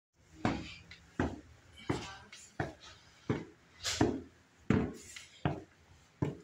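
Footsteps on a staircase in an echoing stairwell: eight steady footfalls, each a sharp knock with a short ring after it, about three every two seconds.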